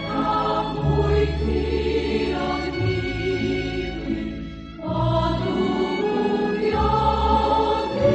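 Choral music: a choir singing slow, sustained chords over steady low notes, with a short break in the phrase a little past halfway.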